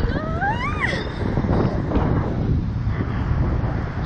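A rider's high-pitched squeal that rises then falls in pitch, lasting about a second at the start, over steady wind buffeting the microphone on the swinging slingshot ride.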